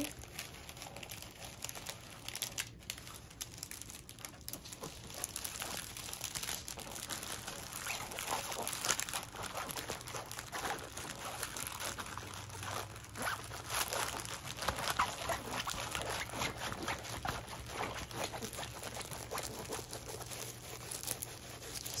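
Plastic and paper packaging being handled off to the side, crinkling and rustling in small, irregular crackles.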